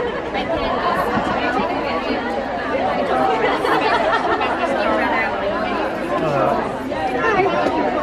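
Crowd chatter: many people talking at once in a large hall, a steady babble of overlapping voices with no single clear speaker.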